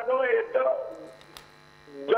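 A voice speaking over a telephone line for about the first second, then a short pause.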